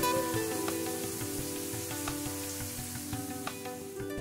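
Overhead rain shower running: a steady hiss of falling water, under soft background music with held notes.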